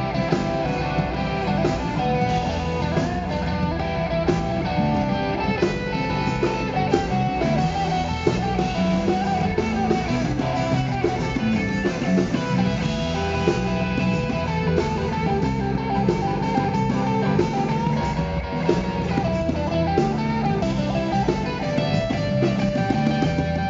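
Live rock band playing an instrumental stretch of the song, with electric guitar out front over a steady beat.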